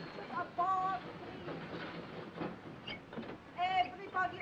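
Brief indistinct voice fragments, about half a second in and again near the end, over the faint steady hiss of an old film soundtrack.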